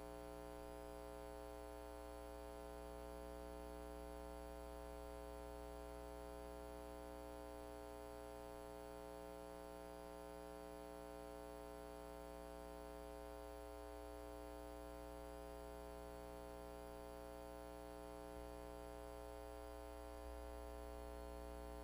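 Faint, steady electrical mains hum with a stack of overtones, unchanging throughout.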